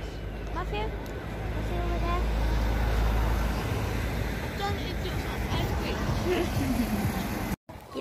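A motor vehicle passing: a low engine rumble that builds to its loudest about two to three seconds in, then fades.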